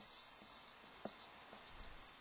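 Faint scratching of a marker writing on a whiteboard, with one small click about halfway through.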